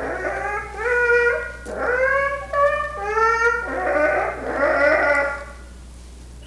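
A man imitating an animal with his voice: a run of about seven short, high, whining cries, stopping about five and a half seconds in.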